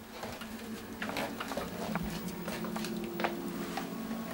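Irregular footsteps and small knocks on a wooden chalet floor, over a low steady hum.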